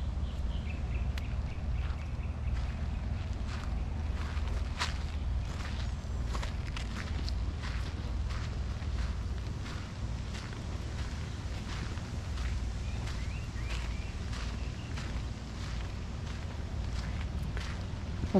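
Footsteps of a person walking along a garden path, irregular steps over a steady low rumble.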